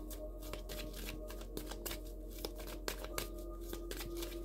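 A deck of reading cards being shuffled by hand, soft irregular card clicks, over quiet background music of held tones.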